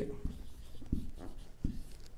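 Marker pen writing on a whiteboard: faint scratching strokes, with three soft knocks about two-thirds of a second apart.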